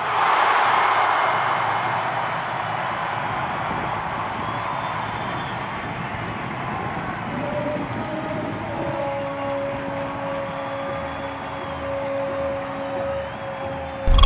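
Stadium crowd cheering a goal: a sudden roar of noise that slowly fades, with a steady held tone coming in about halfway through.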